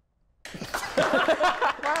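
A small studio audience applauding and laughing, starting abruptly about half a second in after near silence.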